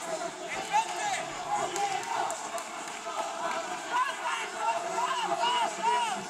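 Several indistinct voices calling out over the general chatter of a crowd.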